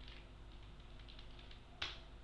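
Computer keyboard keys tapped lightly several times, then one sharp click near the end.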